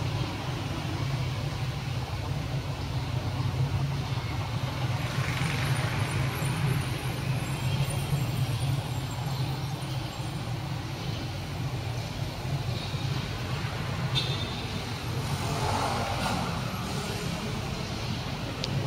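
Steady low rumble and hum of background noise, with two gentle swells in loudness, one about a third of the way in and one near the end.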